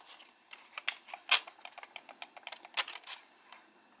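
Creased origami paper crinkling as hands fold and press the model into shape: an irregular run of small crisp ticks and rustles, the sharpest about a third of the way in.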